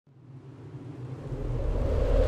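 Low rumbling swell of a logo-intro sound effect, rising steadily from near silence and growing louder.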